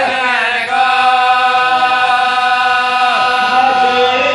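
Several men chanting a marsiya, a mourning elegy, together in a slow melody of long held notes, the phrase bending downward about three seconds in.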